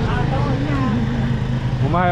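A scooter's small engine idling with a steady low hum, under people talking nearby.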